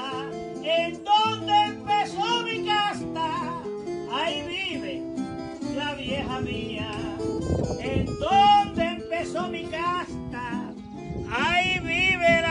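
Puerto Rican seis played on the cuatro puertorriqueño and acoustic guitar: a wavering melodic line over a steady bass accompaniment, in an instrumental stretch between sung décimas.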